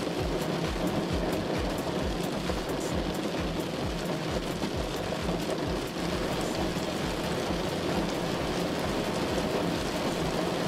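Heavy rain on a moving car, heard from inside, as a steady hiss. Under it runs background music with a steady low beat.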